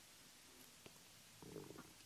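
Near silence: room tone, with a faint click before the middle and a brief, faint low gurgle shortly after.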